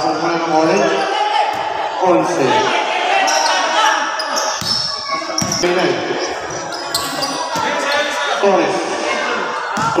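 A basketball bouncing on the court floor now and then, with people's voices talking throughout.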